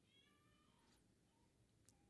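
Near silence: room tone, with one faint, brief high-pitched cry in the first second.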